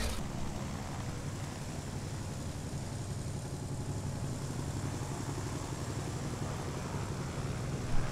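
Steady low drone of a small propeller aircraft's engine, heard from inside the cabin.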